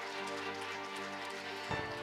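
Audience applauding over steady background music.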